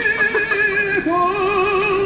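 Recorded singing with music: a singer holds long notes with wide, even vibrato, sliding to a new held note about a second in.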